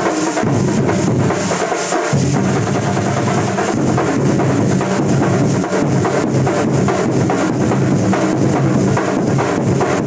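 A Kerala thambolam street drum troupe: many shoulder-slung drums beaten with sticks together in a loud, fast, driving rhythm. The low end grows fuller about two seconds in.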